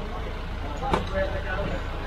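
A small van's engine idling steadily, with faint voices in the background and a single click about a second in.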